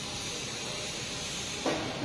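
Steady hiss of compressed air from a pneumatic bucket grease pump in use for greasing loader tracks.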